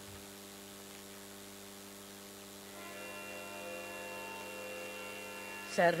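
Steady sustained pitch drone, like a tanpura or shruti box sounding the concert's reference pitch, unchanging in pitch and growing a little louder and richer about halfway through. A woman's singing voice begins right at the end.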